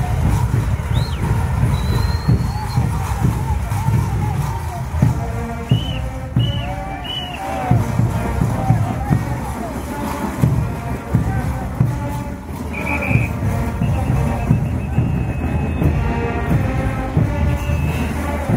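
Loud live band music with a strong, steady beat for the dancing, over crowd voices, with a few short whistle calls, three in quick succession about six seconds in.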